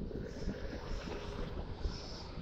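Wind buffeting the microphone outdoors, an uneven low rumble, with a faint steady hum underneath.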